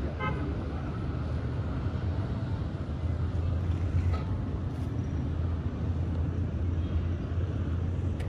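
Town street traffic: a steady low rumble of road noise, with a brief car horn toot just after the start.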